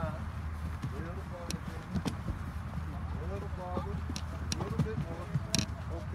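Pallbearers setting a metal casket down onto a graveside lowering-device frame: several sharp knocks and clicks, the loudest near the end, over murmured voices and a steady low rumble.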